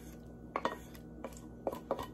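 Boiled elbow macaroni being pushed out of a red enamel pot with a wooden spoon into a Pyrex mixing bowl: a few light, separate clicks and scrapes of the spoon and pot, with quiet between them.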